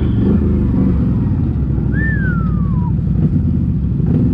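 CFMoto CForce 850 ATV's V-twin engine running at low, steady revs while the quad crawls over a rocky trail. About halfway through a single whistle-like note slides down in pitch for about a second.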